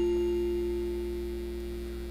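A chord struck on mallet percussion rings on and slowly fades, with one low note held under fainter higher ones.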